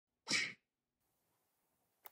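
A single short, sharp breathy burst from a person, about a third of a second long, near the start.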